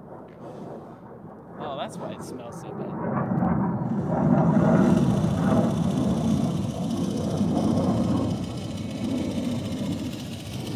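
Swardman Electra electric reel mower running, its powered reel cutting grass, growing louder from about three seconds in as it comes closer.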